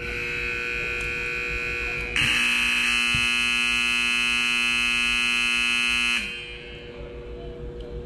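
Arena game-clock buzzer signalling the end of the match: a steady electric buzz for about two seconds, then a louder, fuller buzz for about four more seconds that cuts off suddenly.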